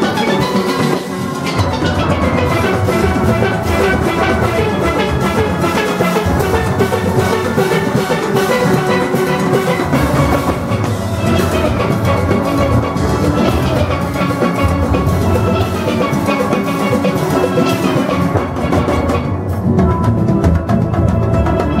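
A large steel orchestra playing loud, many steel pans struck with sticks together, from high tenor pans down to deep barrel bass pans, with a steady driving beat.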